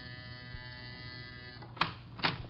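An apartment door buzzer sound effect: a steady electric buzz that stops near the end, followed by a sharp click or knock.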